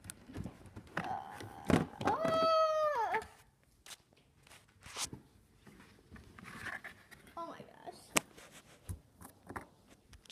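A child's drawn-out, high-pitched vocal sound about two seconds in, held for about a second and falling in pitch at its end. Sharp clicks and knocks are scattered around it, the loudest one just before the vocal sound and another near the end.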